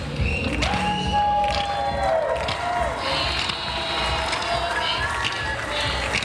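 Live music from a stage performance: several voices singing, with hand claps and crowd voices.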